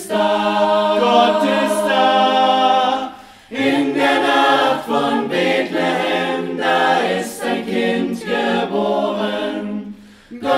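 Mixed-voice (soprano, alto, tenor, bass) amateur choir singing unaccompanied. A long held chord fades away about three seconds in, then the voices come back in and sing on.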